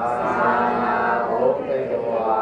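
A voice chanting, drawing out one long held note for about a second and a half before a short break and the next note.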